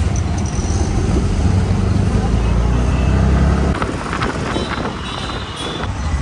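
Auto-rickshaw's small single-cylinder engine running as it drives through street traffic, heard from the passenger seat; its low rumble drops away about two-thirds of the way through.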